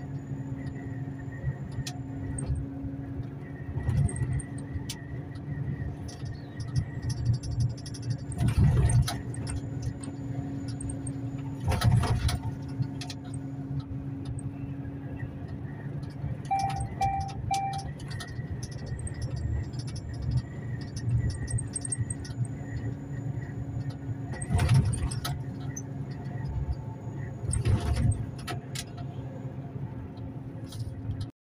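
Inside a moving truck's cab: a steady engine drone with road noise, broken by several sharp knocks and rattles. Three short high beeps sound about halfway through.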